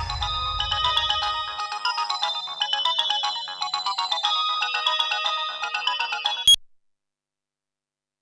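Mobile phone ringtone playing a quick chiming melody, which cuts off suddenly with a click about six and a half seconds in as the call is answered.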